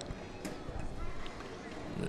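Low room tone of a large hall, with one faint tap about half a second in.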